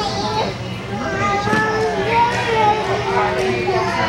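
Young children's voices chattering and calling out over one another with no clear words, over a steady low hum.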